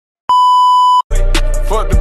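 A steady, high test-tone beep from TV colour bars, lasting about three-quarters of a second and cutting off abruptly. Then, about a second in, a hip hop beat with heavy bass starts.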